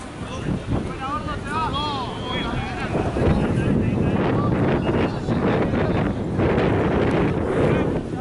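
Wind buffeting the camera microphone, a loud rumbling that swells about three seconds in and stays loud, with players' shouts from the pitch in the first couple of seconds.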